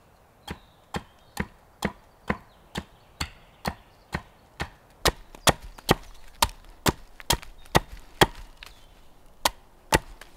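Wood being chopped or struck with a hand tool in a steady rhythm of about two sharp blows a second. The blows grow louder from about halfway through.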